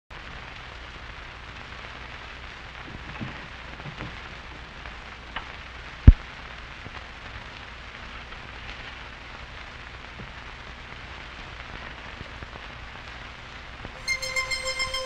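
Record surface noise: a steady hiss and crackle with a low hum underneath, a few soft clicks about three to four seconds in and one sharp, loud pop about six seconds in.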